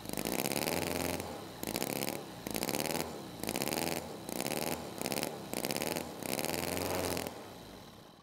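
Cison miniature V-twin model engine, a small spark-ignition four-stroke, running and being revved up and down by hand about seven times, roughly once a second. Its pitch rises and falls quickly with each blip of the throttle, showing good throttle response, and then it fades away near the end.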